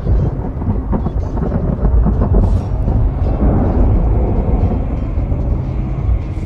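A loud, deep rumble, a thunder-like sound effect for the earth and sky trembling, continuous throughout and easing slightly toward the end.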